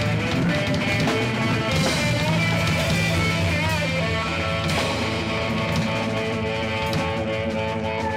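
Live rock band playing: electric guitar over bass, drums and keyboards, with drum and cymbal hits. Notes waver and bend in the middle, and long held notes ring near the end.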